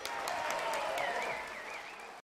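Audience applauding just after the band's final chord has died away. A high, wavering whistle rides over the clapping in the second half.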